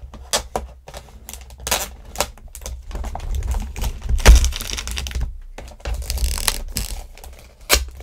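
Clear plastic packaging film being peeled and pulled off a boxed toy: a run of sharp crackles and clicks, the loudest about four seconds in, with a denser crinkling stretch near the end.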